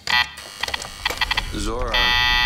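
Harsh electronic buzzing that stutters in rapid pulses, with a brief warbling voice near the end, giving way to a loud, steady buzz at the close: a distorted sound effect laid over a cut into a flashback.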